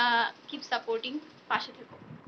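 A woman's voice speaking: a short, quavering, drawn-out syllable at the start, then a few brief syllables separated by pauses.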